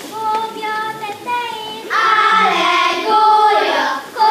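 Young girls singing a Hungarian song: one child's voice at first, then more voices join about two seconds in and the singing gets louder and fuller.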